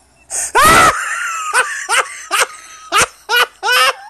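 A man laughing hard at himself: a loud outburst about half a second in, a long high-pitched squeal held for about a second, then a run of short, rhythmic bursts of laughter.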